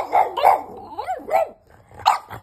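French bulldog puppy barking in a quick string of about five barks, the last two drawn out and rising then falling in pitch, like whiny yowls. It is demand barking from a puppy that wants into the bed.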